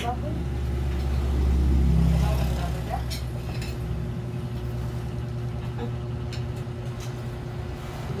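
A low, steady engine rumble, like a motor vehicle running nearby, swelling about two seconds in, with a few light clicks now and then.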